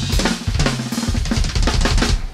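Live funk band's drum kit playing a fast run of snare, bass drum and cymbal hits, with the sustained bass and keyboard notes mostly dropped back.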